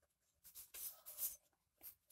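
Pen writing on notebook paper: a few short, faint scratching strokes, the longest about a second in.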